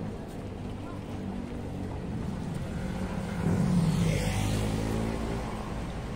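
City street traffic: a motor vehicle's engine running close by. It swells louder about three and a half seconds in and eases off about a second later.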